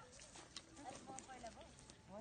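Faint, distant voices of several people talking, with a few soft knocks.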